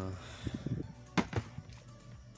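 Handling noise: a few knocks and clacks as plastic storage containers are moved about, the sharpest pair a little over a second in.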